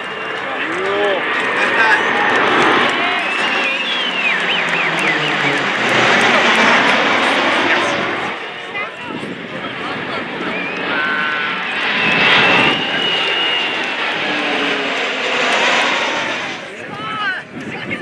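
Jet engines of a Boeing 737 airliner and turboprop engines of the Silver Falcons' Pilatus PC-7 trainers flying past together in formation: a broad rushing engine noise that swells, stays loud for several seconds and dies away near the end.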